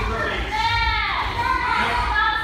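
Young children's high voices calling out and shouting, several overlapping in drawn-out calls that rise and fall in pitch.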